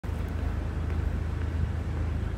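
Steady low rumble of wind buffeting an outdoor microphone, fluttering in level.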